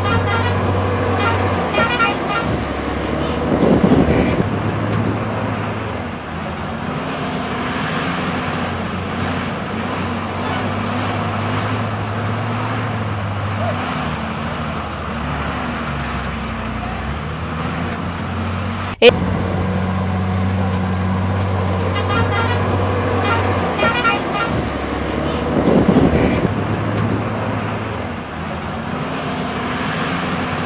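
Diesel engines of a wheel loader, an excavator and sand lorries running together, a steady drone whose pitch rises and falls as the machines work. A single sharp click sounds partway through.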